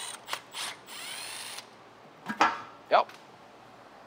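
Electric ratchet running as it spins out an oil pump bolt on a BMW M62TU V8, stopping about a second and a half in.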